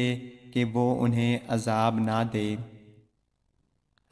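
Only speech: a man narrating in Urdu in a measured, recitation-like voice, trailing off about three seconds in, followed by silence.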